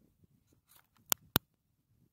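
Two sharp, very short clicks about a quarter of a second apart, over faint background noise.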